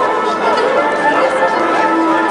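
Crowd chatter: many people talking at once, with music playing steadily in the background.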